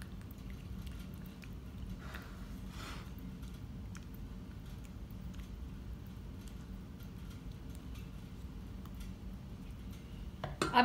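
Wooden spatula spreading thick white sauce over pasta in a glass baking dish: faint soft scrapes and squelches, with two slightly louder strokes about two and three seconds in. A steady low hum sits underneath.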